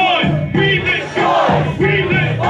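Loud live music with vocals through a club PA, and the crowd shouting along.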